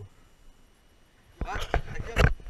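Near quiet for about a second and a half, then a few sharp knocks and bumps near the end, together with a man's short "Ah".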